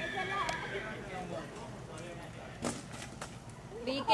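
A few soft knocks of a Paso Fino stallion's hooves shifting on a gravel yard, under faint voices of people nearby.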